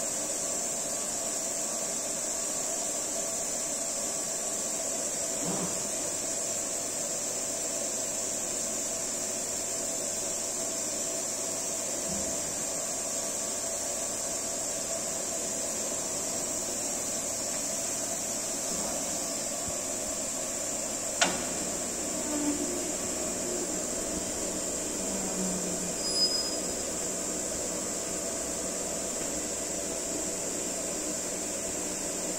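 Essetre CNC woodworking machine running with a steady hum and a steady high whine. A sharp click comes about two-thirds of the way through, followed by a couple of small knocks.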